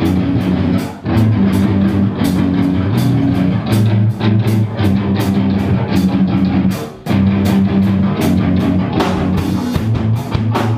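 Live hardcore band playing loud: distorted electric guitars and bass holding low chords over drums hitting an even beat. The band stops dead for a moment about a second in and again around seven seconds in, then crashes back in.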